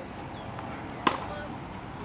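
A tennis ball struck once by a racket, a single sharp crack about a second in.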